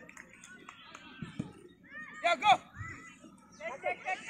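A person shouting "Go! Come" about two seconds in, loud and brief, over faint background voices and a few soft knocks.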